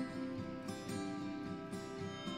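Background instrumental music led by plucked guitar notes.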